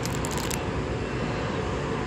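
Steady outdoor street background noise, with a short crackle near the start as a card-and-plastic sock packet is turned over in the hand.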